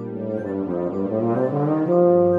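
Tuba playing over a prerecorded electronic accompaniment, the music building in loudness to a sustained chord at the end.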